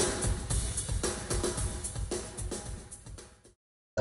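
A drum kit played live in a concert recording, a steady run of strokes that fades out about three and a half seconds in.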